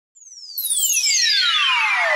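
Synthesized logo-intro sweep: a single high tone gliding steadily downward, joined about half a second in by further falling tones and a swelling hiss that grows louder.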